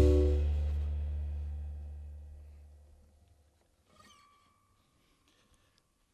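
The final chord of an indie jazz tune ringing out: acoustic guitar over a deep held bass note, fading away steadily over about three seconds into near silence.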